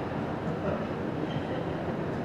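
Steady room noise in a large hall: an even, low rush with no distinct events.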